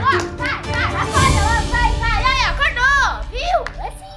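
Children shrieking and squealing in high, sliding cries, several a second, with a noisy rush about a second in.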